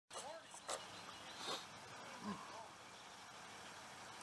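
Quiet background with a few faint, brief distant voices.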